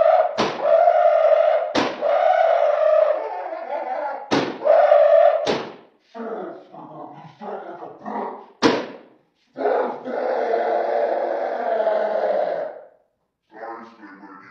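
About five sharp hits land over a long, sustained high-pitched yell, then a short comic voice line in a pitched-up character voice, and a second long yell near the end.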